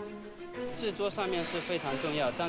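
A man speaking, with background music underneath; the voice begins about half a second in.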